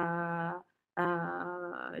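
A woman's voice holding two long hesitation sounds at a steady pitch, hummed fillers rather than words. They are split by a short silence a little over half a second in.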